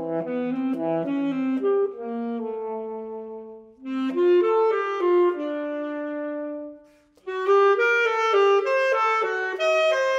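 Solo alto saxophone, unaccompanied, playing a slow D major etude marked Andante con gusto: phrases of moving notes that settle on long held notes. Two short breaks for breath come about 4 and 7 seconds in, and quicker notes follow near the end.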